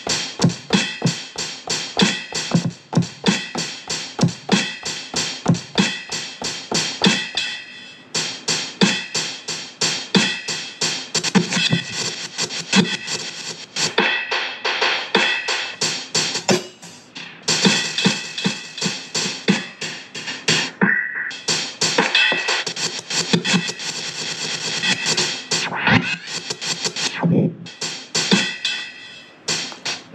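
A sample-based hip-hop beat played from an Akai MPC Live and run through a Roland SP-555's live effects: a steady rhythm of drum hits and samples, cut by several short drop-outs as the effect is worked.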